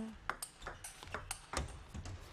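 Table tennis rally: a celluloid-free plastic ball struck back and forth, a quick series of sharp ticks as it hits the paddles and the table, a few per second.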